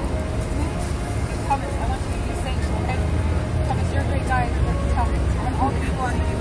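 Indistinct, distant voices of several people over a steady low rumble of street traffic.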